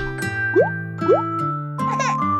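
Light children's cartoon background music with two short, rising cartoon sound-effect sweeps about half a second apart, and a held higher note coming in near the end.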